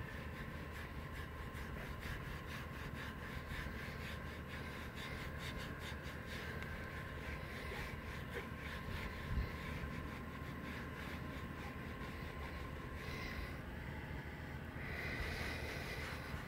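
Faint rubbing of a sponge applicator wiping conditioner over plastic bumper trim, in quick repeated strokes over a low steady background hiss, with one soft thump about nine seconds in.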